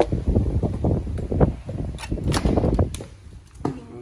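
Irregular footsteps and knocks on wooden porch deck boards and a door while someone walks through the doorway into the house, growing quieter near the end.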